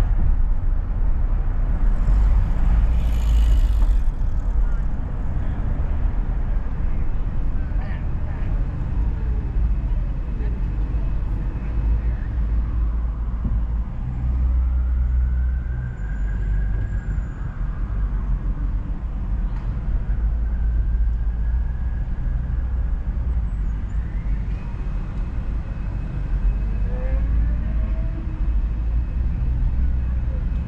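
Car driving on a city street: a steady low rumble of road and engine noise that eases a little about halfway through.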